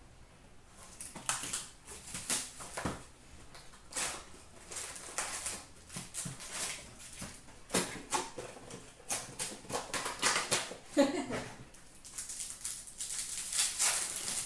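Foil wrappers of O-Pee-Chee Platinum hockey card packs crinkling and tearing as the packs are ripped open, with the box cardboard and cards handled: irregular runs of sharp crackles.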